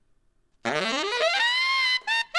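Saxophone sweeping up in a long rising glide onto a held high note, the opening of a short recorded sax riff; it starts about half a second in.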